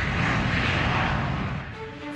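Jet airliner engine noise, a steady rushing sound that fades near the end.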